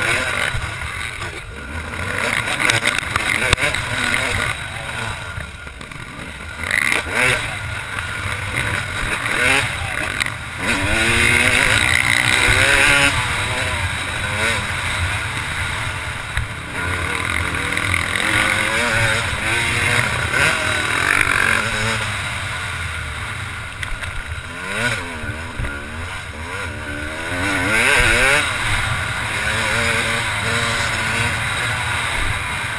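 Yamaha YZ250 two-stroke motocross bike engine, heard from the rider's helmet, revving hard with its pitch rising and falling over and over as the throttle opens and closes and the gears change.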